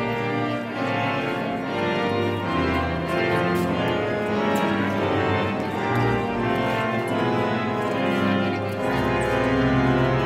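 Large pipe organ playing, many held notes sounding together over a bass line. The deepest pedal notes come and go, and a sustained low note enters near the end.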